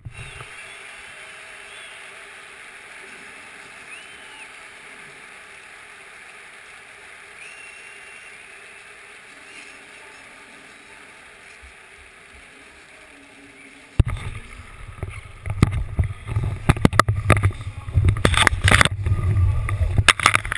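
A steady low hiss of open-air background noise. About fourteen seconds in it gives way to loud, irregular rumbling, knocking and rustling as the action camera is picked up and handled among the parachute canopy and rigging, with fabric and wind buffeting the microphone.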